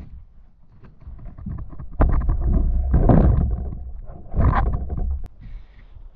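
Heavy canoe being lowered from overhead at the end of a portage: two loud stretches of rumbling and knocking, about two and four and a half seconds in, then a sharp click.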